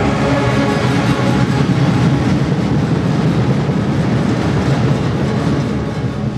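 A live band and ensemble playing a loud, dense, noisy passage, a steady rumbling wash with few clear notes standing out.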